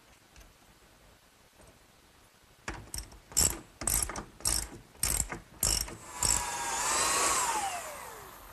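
A series of about eight sharp knocks, roughly two a second, then a handheld power drill boring through a wooden brace, its motor running and winding down in pitch near the end.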